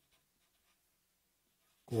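Faint scratching of a felt-tip marker writing on paper, with a man's voice starting just before the end.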